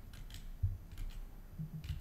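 A handful of separate, quiet clicks from a computer keyboard and mouse.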